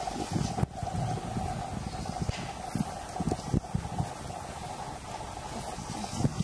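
Irregular knocks and rattles of a chain-link mesh and the ice block sitting on it as orangutans grab and pull at the ice from below, over a steady, even hum.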